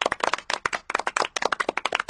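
A short round of applause: several people clapping, with many quick, uneven claps.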